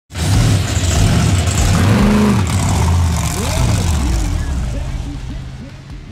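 Monster truck engine running loud, starting suddenly and fading away over the last two seconds, with a voice calling out about midway.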